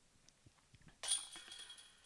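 Disc golf putt hitting the basket's metal chains about a second in: a sudden chain jingle that rings on and fades away.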